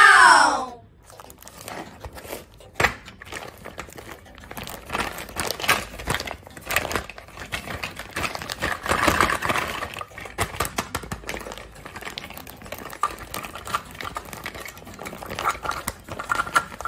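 Clear plastic packaging crinkling and rustling as it is handled and pulled open by hand, with irregular small clicks from the hard plastic toy fruit pieces inside.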